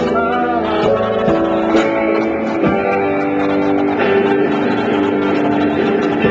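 A live rock band playing a song, with several guitars sounding together in steady chords.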